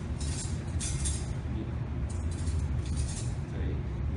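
Metal cutlery clinking a few times as it is laid on a table, over a steady low hum.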